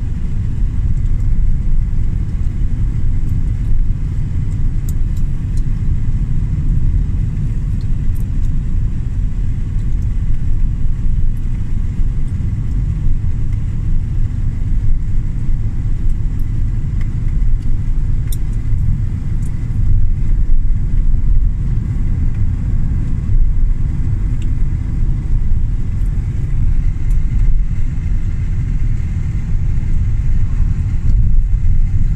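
Steady low rumble of a car being driven, heard from inside the cabin: engine and tyre-on-road noise, with a faint steady high whine.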